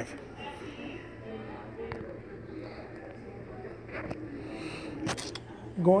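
Quiet room background with faint voices in it and a few soft clicks, then a man begins speaking right at the end.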